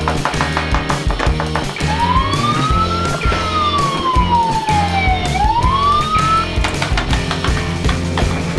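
Ambulance siren wailing over background music with a steady beat: one slow rise, a longer fall and a rise again, starting about two seconds in and stopping after about four and a half seconds.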